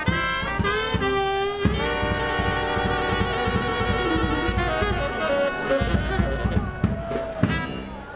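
New Orleans brass band playing an up-tempo tune: trumpets, trombone, saxophone and sousaphone over bass drum and snare. The tune winds down and ends on a final held note near the end.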